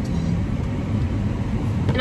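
Steady low rumble of idling vehicle engines heard from inside a stationary car.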